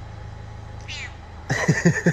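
A domestic cat meowing about halfway through, overlapped by a person's laughter; a short high chirp comes about a second in.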